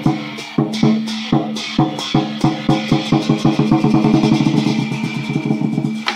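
Chinese lion dance drum beaten with cymbals clashing along. The beats come steadily at first, quicken into a fast roll in the middle, then spread out again near the end.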